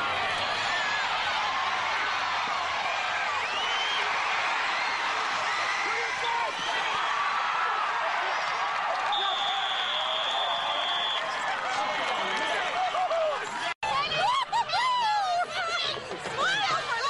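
Crowd chatter: many people talking at once. A steady high tone lasts about two seconds just past the middle, and near the end a single voice comes forward after a brief dropout.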